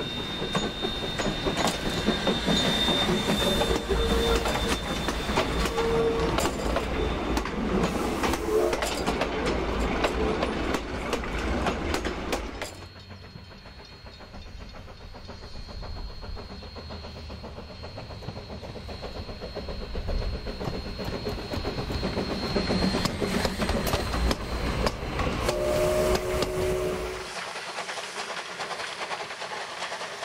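NZR W class 2-6-2T steam tank locomotive working a train past at close range, its exhaust beats and wheel clatter loud for the first dozen seconds. The sound then drops and builds again as the engine approaches once more, with a short whistle near the end.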